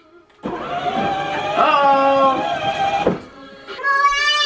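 A short electronic tune or sound clip played through the ride-on toy car's small built-in speaker. It starts abruptly about half a second in and cuts off suddenly about three seconds in.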